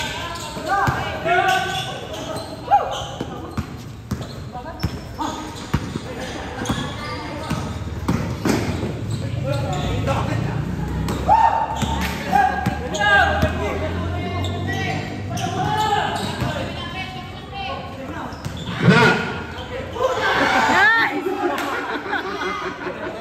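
Basketball bouncing on a hard court during play, a run of short sharp bounces, with players' voices calling out around it.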